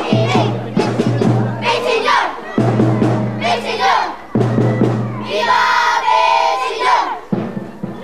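Drum-led Sinulog dance music mixed with a crowd of voices. About five and a half seconds in, voices shout together for over a second.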